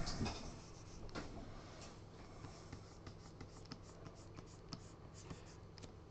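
Faint, irregular light taps and scratches of a stylus working on a digital drawing tablet as someone draws.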